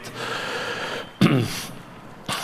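A man breathing in audibly close to a microphone, followed about a second in by a short voiced sound that falls in pitch, like a brief exhaled grunt or half-laugh, and another softer breath.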